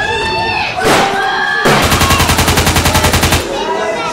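Battlefield soundtrack: people shouting, a single loud crack about a second in, then a burst of rapid automatic gunfire lasting nearly two seconds.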